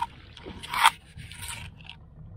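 Jacket fabric scraping against the camera's microphone: a brief rush, loudest just under a second in, with a softer one about half a second later.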